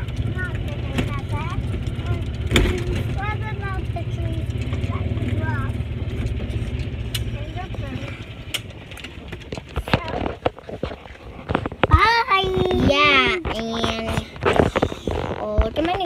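Low rumble of a golf cart ride over bumpy ground, which fades out about halfway through. After it come knocks and clatter, and near the end a child's high voice squealing.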